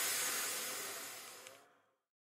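The tail of an electronic background music track fading out, dying away to silence about three-quarters of the way through.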